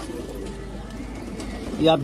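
Domestic pigeons cooing steadily in the background; a man's voice starts near the end.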